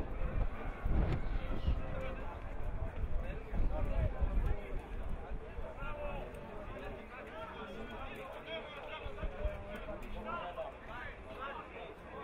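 Indistinct shouts and calls of footballers and coaches on an open pitch, several voices overlapping with no clear words. Heavy low rumbling buffets fill the first four seconds or so, then fall away.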